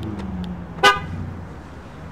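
A Ford sedan's horn gives one short chirp about a second in as the car is locked with the key fob, the lock confirmation, after a couple of faint clicks. A low steady hum runs underneath.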